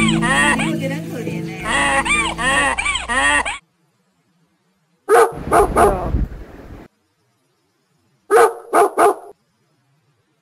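Music with a repeating warbling figure over steady bass notes, cut off abruptly about three and a half seconds in; then a dog barking, three quick barks about five seconds in and three more near nine seconds.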